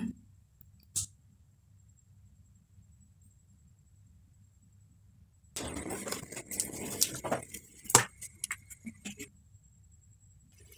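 A chicken egg being handled, cracked on the rim of a bowl and broken open into it: from about five and a half seconds in, a few seconds of light handling noise and small clicks, with one sharper knock of shell on the bowl near eight seconds. A single faint click comes about a second in.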